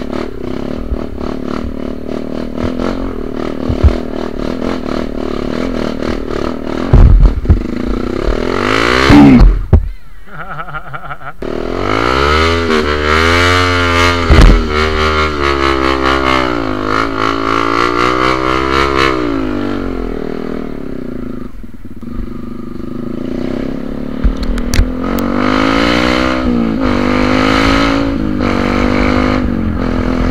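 Trail motorcycle's single-cylinder engine, a Yamaha WR155R, revving up and down in pitch as it is ridden. There are a few loud knocks about seven to nine seconds in, and a short dip in the engine sound just after.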